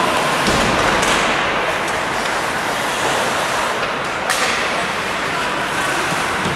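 Ice hockey play in a rink: a steady hiss of skates on the ice and rink noise, with light clicks and one sharp crack about four seconds in from puck or stick contact.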